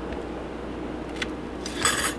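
Kitchen knife working on a plastic cutting board while slicing an onion: a faint tap about a second in, then a short, louder knife stroke near the end, over a steady low hum.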